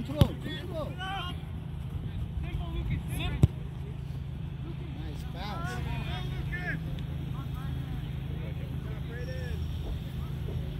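A soccer ball kicked hard just after the start, with a second sharp thud of the ball about three and a half seconds in. Players' shouts and calls come and go over a steady low rumble.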